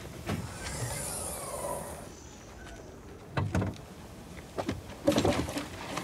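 Car rear door being handled: a click, a drawn-out squeaking slide, a thump, then a flurry of knocks and rustling as things inside the car are rummaged through.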